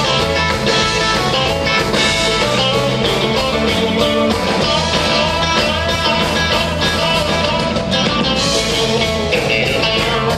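Rock and roll band playing an instrumental break with guitar to the fore over a steady drum beat, without vocals.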